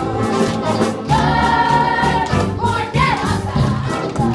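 A group of voices singing a musical number with accompaniment. They hold one long note from about a second in to midway through, then move on through the tune.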